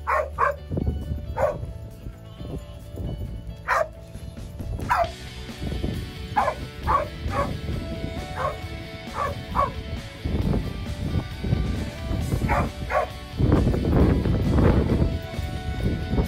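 A dog barking at intervals, short sharp barks singly and in quick pairs, over background music. A stretch of low rumbling noise comes in near the end.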